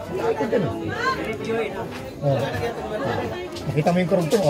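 Overlapping chatter of several voices, with music playing underneath.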